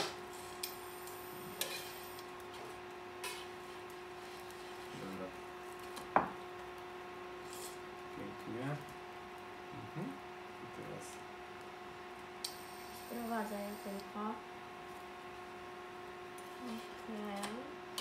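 Cooking utensil sounds: a few sharp clinks and knocks of a metal spatula and knife against a frying pan and cutting board, the loudest just at the start and about six seconds in, over a steady low hum.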